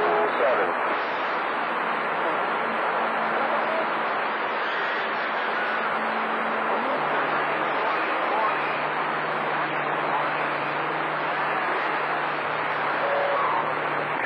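CB radio receiver on channel 28 (27.285 MHz) hissing with band noise between transmissions while receiving long-distance skip, a few faint steady carrier tones and weak, distant voices buried under the noise.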